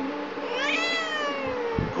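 A cat gives one long drawn-out meow, starting about half a second in, rising and then sliding slowly down in pitch. It is a cranky, talking-back meow from a cat that is being unfriendly and won't come when called.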